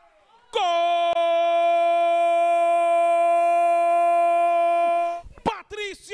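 A football commentator's drawn-out goal cry: one long "Gooool" held on a steady pitch for about four and a half seconds, starting about half a second in and breaking off near the end.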